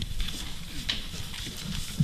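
Quiet room sound through a handheld microphone: a low rumble with a few soft clicks and knocks, typical of handling noise.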